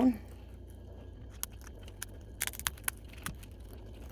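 A dried pine cone's woody scales snapping and crackling as they are twisted off with needle-nose pliers through a towel. There are a few sharp clicks, one about a second and a half in and a quick cluster about two and a half seconds in, over a faint steady low hum.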